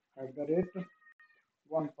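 A man's voice talking in Hindi, with a brief, faint, steady electronic tone of two pitches about a second in.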